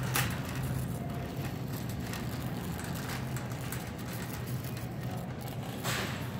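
Metal shopping cart rolling across a hard store floor: a steady low rumble from the wheels with a couple of brief rattles, one just after the start and one near the end.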